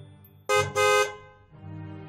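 A car horn honking twice in quick succession, the second honk a little longer, over soft background music.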